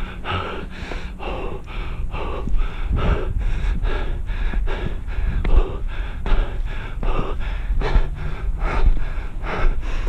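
A hiker's heavy, rapid breathing: hard, rhythmic breaths at about two to three a second, from the exertion of climbing steep stairs at speed.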